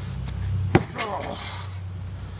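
A single sharp chop of a Cold Steel Demko Hawk's blade striking the back of a padded office chair, about three-quarters of a second in.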